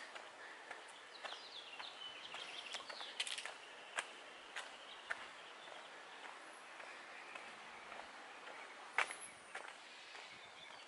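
Faint garden ambience with small birds chirping, mostly in the first few seconds, and scattered light clicks throughout, the sharpest about four and nine seconds in.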